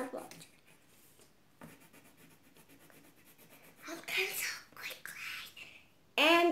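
Faint scratching of a pencil on paper as stripes are coloured in, then a child whispering about four seconds in.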